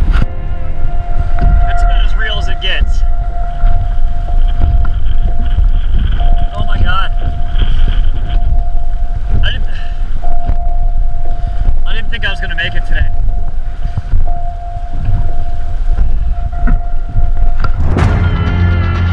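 Wind buffeting a small action camera's microphone, with a thin steady tone running through it. A man's voice breaks in several times, too indistinct for words.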